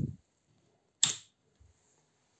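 A single sharp click about a second in, as the 12 V primary power supply is switched on and the LED lamp lights up.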